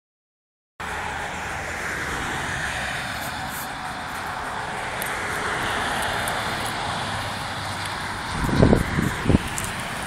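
Steady noise of motorway traffic, starting just under a second in, with two short low thumps near the end.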